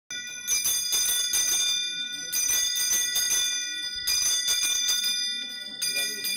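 A hand bell rung in quick repeated shakes, about five rings a second, with several high ringing tones held between strikes; the ringing pauses briefly about two seconds in and again near four seconds.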